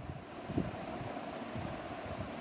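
Steady background noise of the recording room, a low even hiss with no distinct event.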